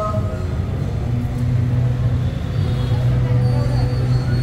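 Low murmur of voices over a steady low hum.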